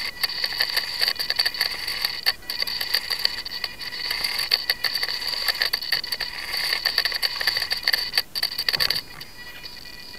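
Cyclic servos of a 450-size flybarless RC helicopter buzzing and whining as they drive the swashplate in the gyro's corrective movement, with rapid ticking and a wavering level. The sound cuts off abruptly about nine seconds in.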